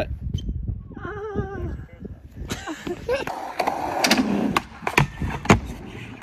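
Skateboard wheels rolling on a skatepark ramp, with several sharp clacks of the board, the loudest about half a second before the end.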